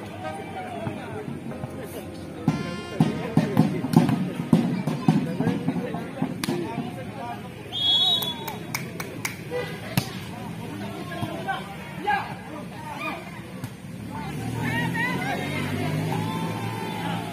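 Crowd voices and background music at an outdoor volleyball game, loudest between about two and five seconds in. About eight seconds in there is a short referee's whistle, followed by sharp smacks of the ball being hit.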